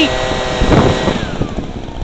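Small gas engine of a blower, used to clear snow off logs, running steadily at high speed, then its pitch drops away about a second in as it is throttled down.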